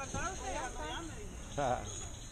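Steady, high-pitched chirring of insects, with indistinct voices beneath it.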